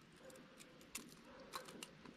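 Near silence with a few faint metallic clicks: fishing pliers and lure hooks being handled while unhooking a walleye.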